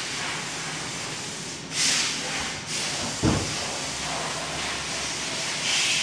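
A short hiss of compressed air lasting about a second, about two seconds in, followed about a second later by a single dull thump, over a steady background hiss.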